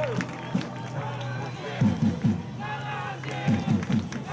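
Indistinct men's voices talking in short bursts, over a steady low hum.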